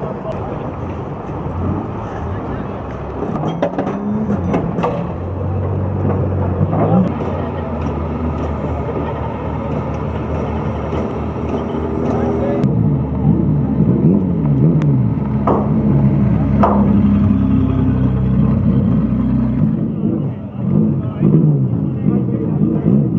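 Old banger race car engines running in the pits, with people talking around them; the sound changes abruptly a little past halfway through.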